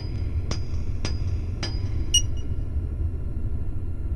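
A steady low rumble with three light clicks about half a second apart, then a single ringing metallic clink a little over two seconds in.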